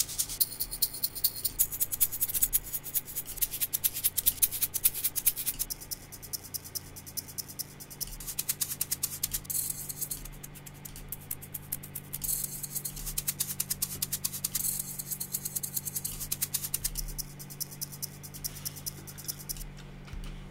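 Shaker loops played back as a fast, even shaking rhythm, switching to a different pattern every few seconds while samples are auditioned, over a steady low electrical hum.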